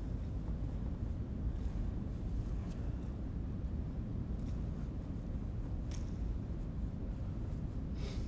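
Steady low room rumble, with a few faint soft taps of lacrosse balls dropping into stick pockets as they are caught one-handed.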